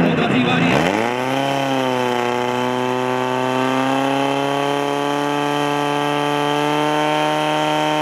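Fire-sport portable motor pump's engine revs up to full throttle about a second in and holds at high, steady revs. It is pumping water out through the hoses once the suction hose has been coupled.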